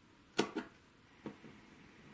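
Scissors snipping off the small protruding fabric points (dog-ears) of a pieced quilt unit: one sharp snip about half a second in, then two fainter clicks.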